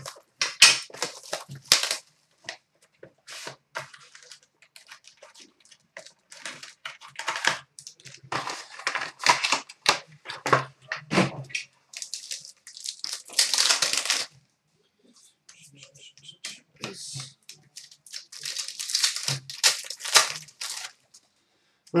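A trading-card box and its foil-wrapped pack being torn open by hand: repeated crinkling and ripping of wrapper and foil, with one longer rip a little past halfway.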